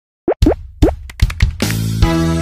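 Channel intro jingle: after a brief silence, a run of quick rising plop sound effects and clicks. Music with held notes comes in about a second and a half in.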